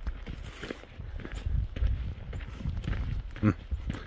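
A hiker's footsteps on a dirt trail, in an uneven walking rhythm on an uphill climb, with low bumps from the handheld phone. A brief voiced breath or grunt comes about three and a half seconds in.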